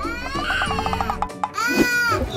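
Cartoon crying sound effect over background music: a long, wavering wail, then a short wail near the end that rises and falls.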